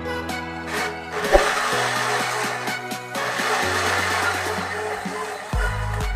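Personal bullet-style blender whirring as it blends a mango shake. It starts about a second in, dips briefly about halfway, then runs on and stops shortly before the end, over background music.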